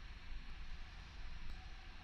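Quiet room tone: a steady low hiss and hum, with one faint click about one and a half seconds in.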